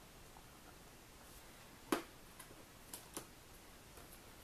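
A few light clicks from hands handling a clear stamp and card on a plastic stamping platform: one sharp click about two seconds in, then two fainter ones a second later, over quiet room tone.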